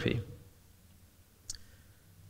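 A pause in a talk on a stage: faint room tone with a low hum, and one short, sharp click about one and a half seconds in.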